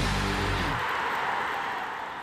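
Closing theme music of a TV programme ending: a held chord stops about three quarters of a second in, leaving a rushing, hiss-like tail that slowly fades.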